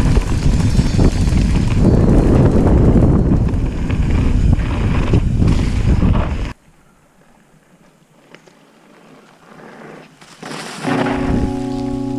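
Loud rushing wind and riding noise from an electric mountain bike on a trail, which cuts off abruptly about six and a half seconds in. After a few quiet seconds, music with long held chords begins near the end.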